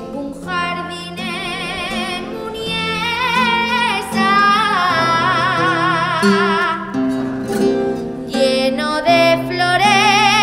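A woman singing an Aragonese jota in long held phrases with wide vibrato, accompanied by a classical guitar.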